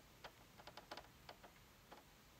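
A handful of faint, irregular ticks as a magnetized screwdriver turns a screw out of the microwave's sheet-metal vent cage.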